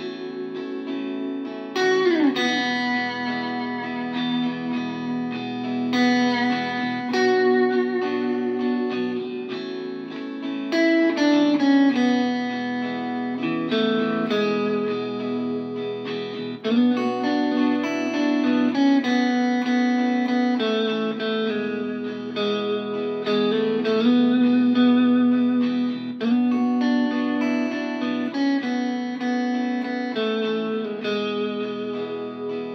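Electric guitar played with a looper: a looped backing of B minor, A and E chords under a single-note lead line with sliding notes, one clear downward slide about two seconds in.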